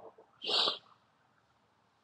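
One short breathy hiss from the speaker's mouth, about half a second long, near the start, between her words.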